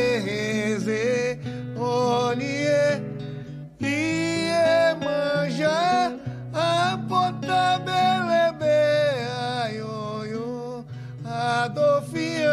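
A man singing a slow, chant-like song in an Afro-Brazilian candomblé language, accompanied by a nylon-string acoustic guitar. The voice breaks off briefly about three and a half seconds in, then carries on.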